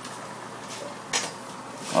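Steady hiss and fizz of aquarium bubbles from a bubbler, with one sharp click a little past halfway.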